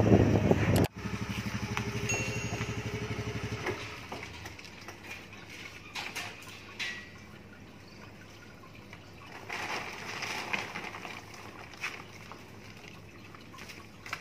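Motor scooter engine idling with an even pulse for about three seconds, then switched off. After that comes a quiet outdoor background with a few faint clicks and knocks.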